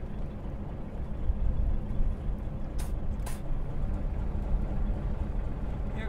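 A small boat's engine idling, a steady low rumble, with two brief rustling sounds near the middle.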